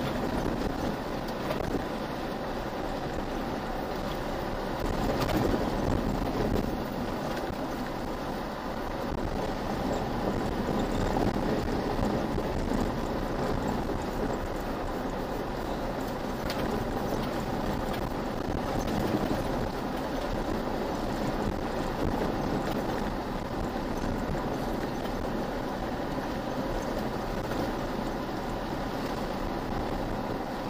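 A vehicle driving steadily along a gravel and sand track: a continuous rumble of tyres on gravel mixed with engine noise, heard from inside the cabin.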